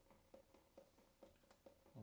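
Near silence: room tone with faint, soft ticks about four times a second.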